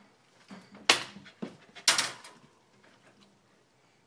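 Metal wire dog crate rattling and clanking as a toddler moves against its bars from inside, with two sharper clanks about a second apart and a few lighter knocks.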